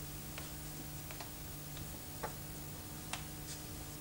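Faint, irregular small clicks and taps from a plastic doll being handled, over a low steady hum.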